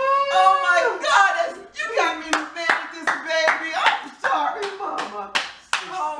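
Hand clapping in a quick run, about three claps a second, starting about two seconds in, over raised voices.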